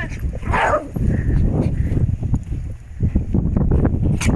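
A small dog gives one short bark about half a second in, over a steady low rumble.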